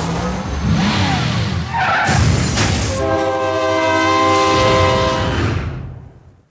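Train horn sounding one long, steady chord of several notes for about two and a half seconds, starting about three seconds in and fading away near the end. Before it comes a noisy rush of mixed sound.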